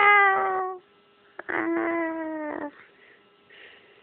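A domestic cat meowing twice in long drawn-out calls. The first slides down in pitch and ends just before a second in. The second, steadier in pitch, comes about half a second later and lasts a little over a second.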